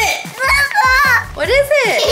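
Children's voices talking and exclaiming over background music with a steady beat.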